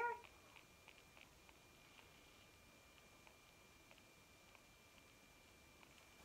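Near silence: room tone with a faint, steady high-pitched tone and a few tiny ticks.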